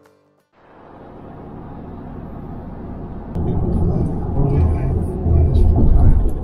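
Road noise inside a vehicle's cabin at highway speed: a steady low rumble with tyre and wind hiss, fading in after a brief silence and growing louder about three seconds in.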